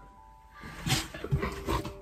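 Chow Chow dog licking itself close to the microphone: a run of irregular noises starting about half a second in, over quiet background music.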